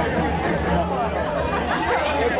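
Chatter of several people's voices overlapping, none clear enough to make out.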